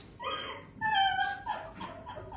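A woman sobbing: a high-pitched whimpering cry, loudest about a second in, between quieter broken sobs.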